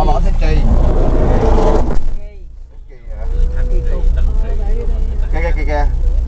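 A vehicle driving along a street: a steady low engine and road rumble with rushing noise. Near the middle the noise drops off sharply for about a second, then comes back.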